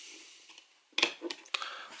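Blu-ray disc being pried off the plastic centre hub of a steelbook case: a few short sharp clicks about a second in.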